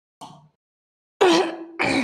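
A woman with a sore throat clearing her throat and coughing: two loud, rough bursts close together a little over a second in.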